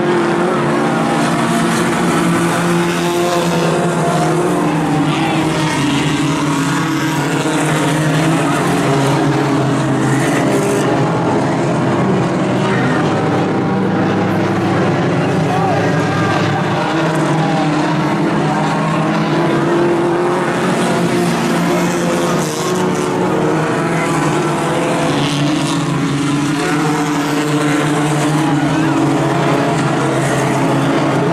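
Several Outlaw Tuner-class race cars running laps on a dirt oval, their engines droning steadily and overlapping, with no break in the engine noise.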